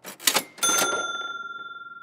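Cash-register 'ka-ching' sound effect: a couple of quick mechanical clacks, then a bright bell ring that dies away slowly. It marks a price being shown.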